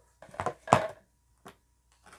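Packaging being handled on a tabletop: a quick cluster of knocks and rustles, the loudest about three-quarters of a second in, then a single short tap past the middle.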